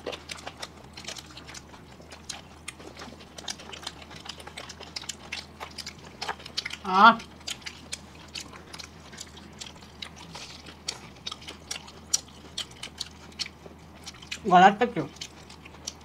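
Close-miked chewing and biting of food: many small, crisp, irregular clicks of mouths working. A brief voiced hum comes about seven seconds in, and a voice says "it's good" near the end.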